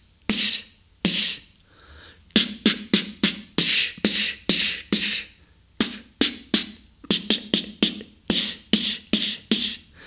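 Beatboxed 808 snare combined with an s fricative ("Ts"): an unaspirated outward tongue stop released into a short hiss. It is made twice on its own, then repeated in a quick run of hissing snare hits, about three a second with brief pauses.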